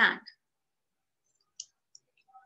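A single short, sharp click about a second and a half into an otherwise silent pause, after a spoken word at the start.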